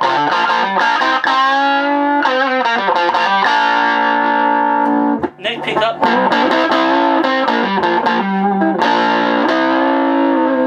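Electric guitar, a Gibson Les Paul with P90 pickups, played through an early-1950s Gibson BR-9 valve amplifier turned up all the way. The amp has no negative feedback, so it breaks up into overdriven distortion. Lead lines with bent notes, and a brief break about five seconds in.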